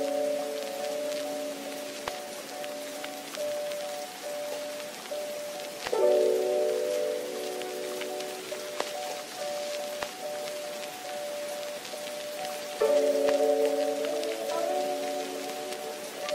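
Soft instrumental music of sustained mid-range chords, changing to new chords about six seconds in and again near thirteen seconds, over a steady hiss scattered with light ticks.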